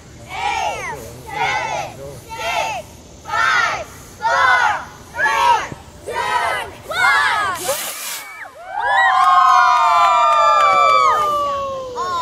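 A group of children chanting a countdown in unison, one number about every 0.7 seconds. About eight seconds in, the model rocket's motor fires with a short whoosh, and the children break into cheering and long drawn-out shouts.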